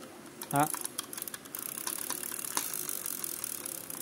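Conventional revolving-spool fishing reel being turned by hand: a fast, continuous run of small mechanical clicks from its gears and ratchet.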